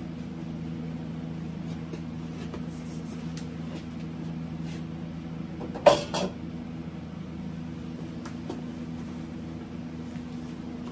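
A sharp metallic clank about six seconds in, followed by a smaller knock, as a welded steel-tubing hollowing bar is handled. A steady low hum runs underneath.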